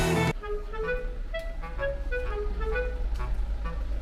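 Edited-in guitar music that cuts off just after the start, then soft background music of short, separate melodic notes over a steady low rumble of car-park traffic.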